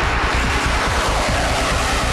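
F-15 Eagle fighter jet flying past, its twin turbofan engines giving a steady, loud rushing jet noise.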